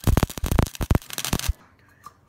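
Wire-feed welder arc crackling and spitting as a bead is laid on a steel square-tube frame joint. It stops abruptly about a second and a half in.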